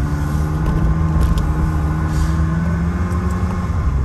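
Ferrari 360 Spider's V8 engine and exhaust running at a steady engine note while driving slowly, with the main tone dropping away shortly before the end.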